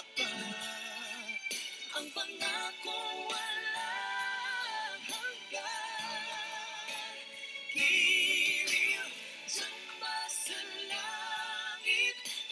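A Tagalog pop ballad sung live as a female–male duet over musical accompaniment, the voices gliding with vibrato. About eight seconds in comes a loud, high held note with a wavering vibrato.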